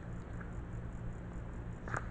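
Steady low hum with faint handling noise, and one brief sharp sound near the end.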